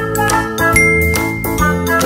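Upbeat children's intro jingle: quick, bright melody notes over a steady beat, with one high note held through the second half.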